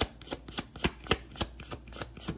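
A tarot deck being shuffled by hand, the cards snapping together in an even run of about four clicks a second.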